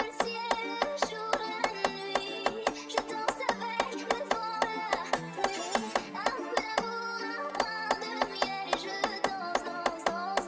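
Drill beat playback: a counter-snare pattern of short, sharp hits at about four a second, in an irregular syncopated rhythm with a quick roll partway through, over a sampled plucked-guitar melody with a sung vocal.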